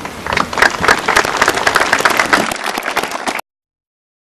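A crowd of people applauding, with dense rapid claps that begin a moment in and cut off suddenly a little before the end.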